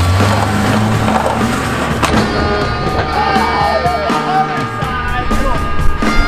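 Background music playing at a steady level.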